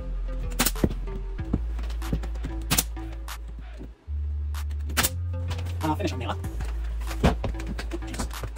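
Brad nailer firing 1¼-inch brads into mitred door casing: a series of sharp single shots, about six, roughly a second apart.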